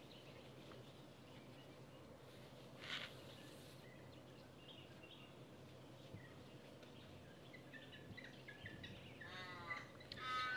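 Near silence: faint outdoor ambience with scattered soft bird chirps and a brief soft rustle about three seconds in.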